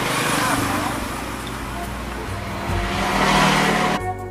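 Motor vehicle noise from nearby traffic, a steady mix of engine hum and road noise that swells somewhat over the last second or so, with faint background voices.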